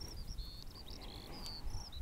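Faint string of short high-pitched chirps, some notes stepping up or down in pitch, over a low background rumble, with a faint click about three-quarters of the way through.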